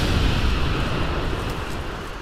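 The tail of a fiery boom sound effect from an animated logo intro: a deep rumble with hiss on top, fading away slowly.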